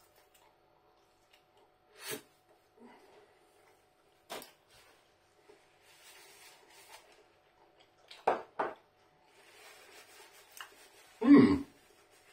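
A person chewing a bite of pizza crust, with a few short crunchy sounds from the mouth and a paper napkin rustling as the mouth is wiped. Near the end comes a brief, louder vocal sound.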